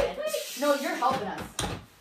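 Voices talking, with a sharp knock at the very start and a dull thump about a second and a half in, from a wooden bed frame and its under-bed drawer being handled.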